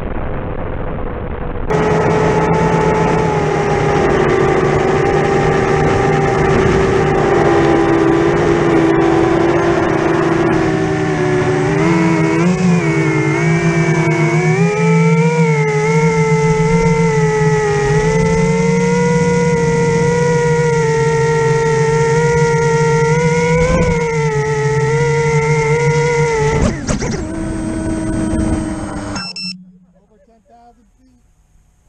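Electric motor and propeller of an FPV model aircraft in flight, a steady high whine with several overtones whose pitch sags for a few seconds and then climbs again as the throttle changes. It cuts off abruptly near the end.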